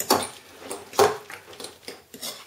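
A spoon stirring thick batter in a bowl, scraping and knocking against the bowl, with two sharper knocks, one at the start and one about a second in.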